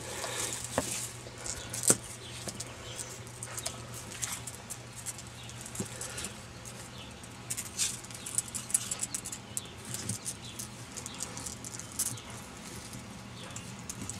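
A pet turtle's claws and shell scraping and clicking on rocks and rustling in dry grass as it climbs, in irregular small clicks and scrapes with a few sharper knocks.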